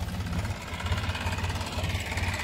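Tractor's diesel engine running steadily, a low, even chugging.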